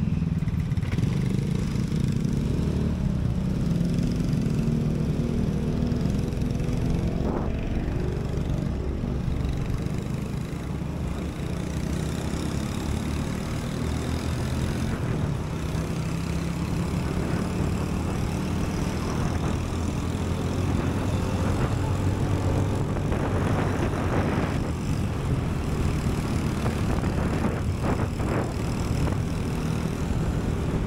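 Honda Beat scooter's small single-cylinder engine running steadily through a ride. It pulls away from a stop with a rising engine note in the first few seconds, among the sound of surrounding motorbike and car traffic.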